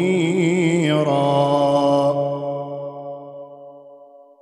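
A male Quran reciter's voice in melodic tajwid recitation (tilawat), drawing out a long note. He ornaments it with quick wavering turns, holds it steady from about a second in, and lets it fade away.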